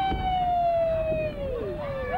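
A child's long, high shout, held for about two seconds with the pitch slowly falling, then dropping away near the end.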